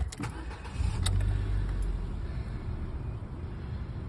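Ford Fiesta engine started with the key: it catches about a second in, runs louder for a moment, then settles to a steady idle.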